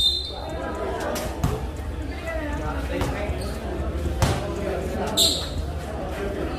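A basketball bouncing on a concrete court a couple of times, with sharp single thuds that echo in a large covered hall, over steady crowd chatter; a brief high-pitched squeal about five seconds in.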